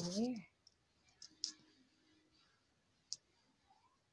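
A child's voice breaks off in the first half-second. Then come faint clicks and taps from the phone being handled and set still, with one sharp click about three seconds in.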